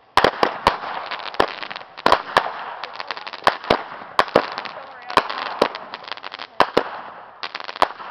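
Sabretooth firework going off: it starts suddenly, then fires an irregular string of sharp pops and bangs, a few a second, over a continuous crackling hiss.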